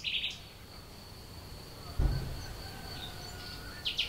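Outdoor ambience with small birds chirping, once at the start and again near the end, over a thin steady high insect drone. A brief low bump comes about halfway through.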